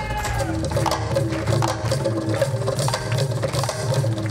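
Live Indian light-music band playing the song's opening: quick hand-drum and percussion strokes over steady held keyboard notes, with a sung line fading out in the first half-second.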